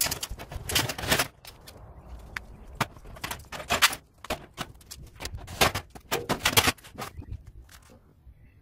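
Thin sheet-metal oven casing panels being pulled about and handled, in clusters of sharp metallic clanks, rattles and scrapes.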